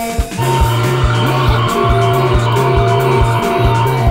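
A rock band playing a krautrock/space-rock song live in a rehearsal room: a steady, driving drum beat under a repeating bass line, with guitar and held droning tones on top. The sound briefly drops near the start before the groove carries on.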